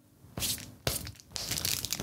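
Plastic packaging crinkling and rustling as it is handled, in short irregular scrunches with a small click about a second in.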